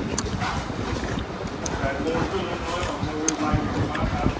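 Indistinct background voices over steady eatery room noise, with two short sharp clicks, one just after the start and one a little after three seconds.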